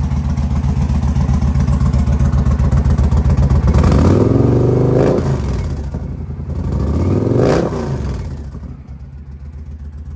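2020 Indian Challenger's V-twin, with Stage 2 cams and a Freedom 2-into-1 exhaust, running warm at idle and then revved twice. The revs climb about four seconds in and again about seven seconds in, each time falling back to idle. The owner thinks the engine is running a tad rich on its Stage 2 reflash.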